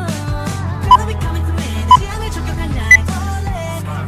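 Workout interval-timer countdown beeps over background music: short beeps about once a second, with the last one higher-pitched, marking the end of the exercise interval and the start of the rest period.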